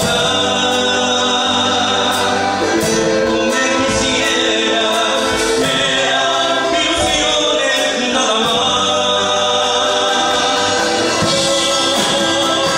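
A man singing into a hand-held microphone, amplified over a PA, backed by a live Latin American folk band, with long held sung notes.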